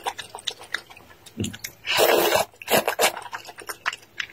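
Close-miked eating sounds of wide Chinese noodles in a wet chili sauce: small wet clicks and mouth smacks, then a louder wet chewing or slurping sound lasting about half a second around the middle, followed by a couple of shorter ones.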